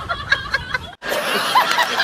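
A man laughing heartily in quick repeated bursts. The laughter starts abruptly about a second in, after a sudden cut, following brief voice sounds.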